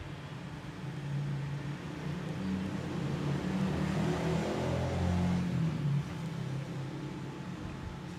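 A low, uneven rumble that grows louder toward the middle and drops away about six seconds in.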